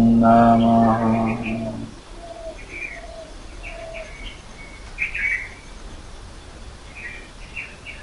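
A man's mantra chant, held over a steady low drone, ends about two seconds in. After it come faint, scattered bird chirps and a few short lower calls.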